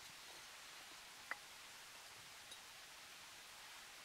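Near silence, with one short faint click a little over a second in.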